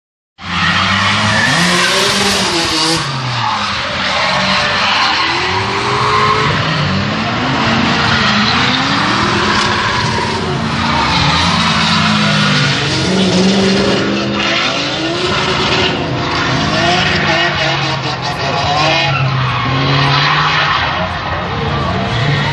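Drift cars sliding through the corners: engines revving hard, their pitch rising and falling again and again, over a continuous screech of tyres spinning sideways.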